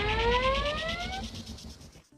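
End of an electronic intro jingle: several synth tones sweep upward together like a riser, then fade out, and the sound dies away to almost nothing by the end.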